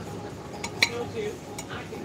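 Metal cutlery clinking against a plate: a few short sharp clinks, the loudest a little under a second in.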